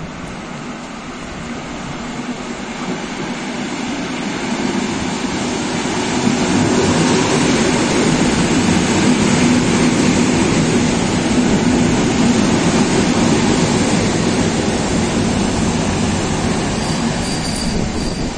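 EN57AL electric multiple unit pulling into the platform: the rolling rumble of its wheels and running gear grows louder as the cars come alongside, then eases off as the train slows. A brief high squeal comes near the end as it brakes to a stop.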